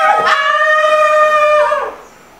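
A long, high-pitched wordless yell held on one steady note, which cuts off just before the end.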